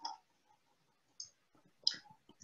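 Two short clicks of a computer mouse button: a faint one a little past the middle and a sharper one near the end.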